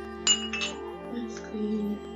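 Glass water jars clinking as one is set down among the others: two sharp, ringing clinks in quick succession about a quarter of a second in. Soft background music plays under them.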